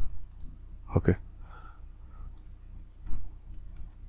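A few computer mouse clicks, the loudest about three seconds in, with a brief spoken "okay" about a second in.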